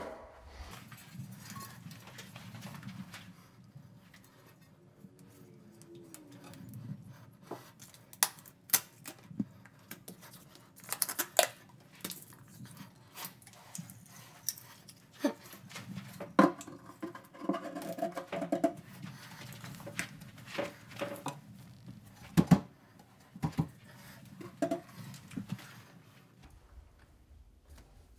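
Intermittent knocks, taps and rustling of hand work as an undermount sink is pushed up into place under a granite countertop and pressed down. The sharpest knocks come in the second half.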